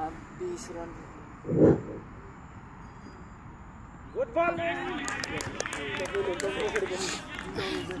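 Men's voices calling out across a cricket field from about four seconds in, as the ball is bowled. Earlier, about a second and a half in, there is one short, dull, low thump.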